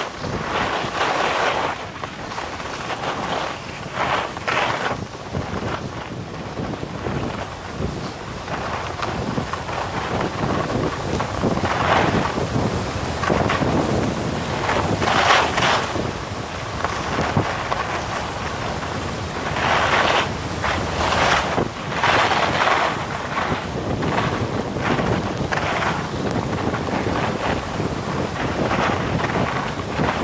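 Rushing wind buffeting a helmet-mounted camera's microphone during a ski descent. Under it the skis hiss and scrape over packed snow, in noisy surges every few seconds as the skier turns.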